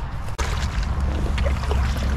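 Wind rumbling on the microphone over light water noise and small knocks from a kayak on the water, after a brief cut in the sound about a third of a second in.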